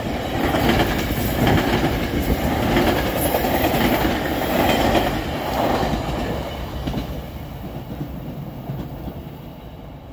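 GO Transit bilevel passenger coaches rolling past, wheels clicking over the rails. The sound fades steadily after the cab car goes by, about six seconds in, as the train moves away.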